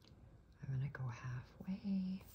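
Soft speech: a woman saying a few quiet words under her breath, in two short groups of syllables about half a second and a second and a half in.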